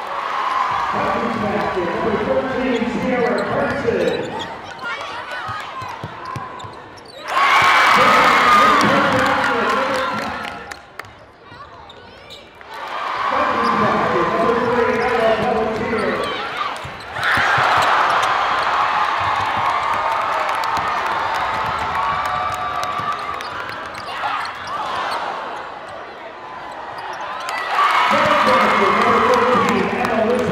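Basketball game sound in a large hall: a ball bouncing on the hardwood court with short knocks throughout, under a wash of indistinct crowd and player voices. The loudness jumps up and down abruptly several times.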